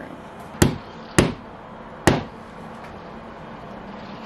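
Three hammer blows driving a nail into a wall, evenly spaced over about a second and a half, with the nail going in easily.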